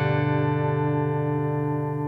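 Little Martin acoustic guitar: a strummed chord ringing out and slowly fading, with no new strums.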